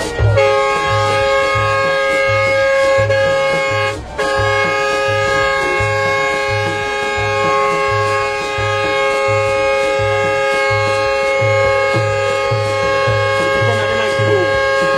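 Air horn on the bus held on almost continuously, a steady multi-tone blast with one short break about four seconds in. Under it runs music with a thumping bass beat.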